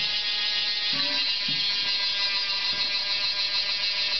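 A steady mechanical buzzing whir with a high whine, unchanging in pitch and level.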